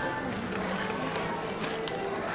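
Indoor store ambience: background music with indistinct voices of other people nearby.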